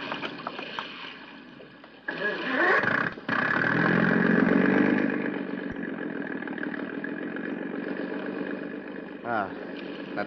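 Radio-drama sound effect of a motorboat engine starting. A first attempt about two seconds in, then a second later it catches and runs loud, and it slowly fades as the boat pulls away.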